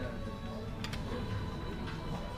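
Hill Billionaire fruit machine playing its electronic tune and tones while its cash-offer feature runs, with a couple of sharp clicks a little under a second in.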